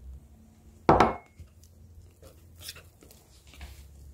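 A sharp knock against a mixing bowl about a second in, then lighter clicks and scrapes of a wire whisk stirring cake batter in the bowl.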